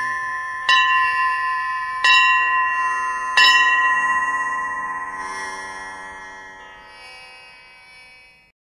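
A bright metallic bell chime struck three times, about one and a half seconds apart, each ring sounding over the last. The ringing then dies away slowly to a faint level, closing out the devotional chant.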